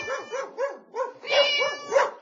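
A dog barking in a quick run of short barks, about four a second.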